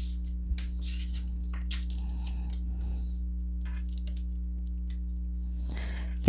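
Tarot cards being handled and laid out on a table: soft, scattered rustles and slides of card stock. A steady low hum runs underneath.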